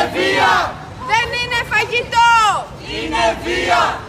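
A group of protesters shouting a slogan in unison, chanting it over and over in loud shouted phrases.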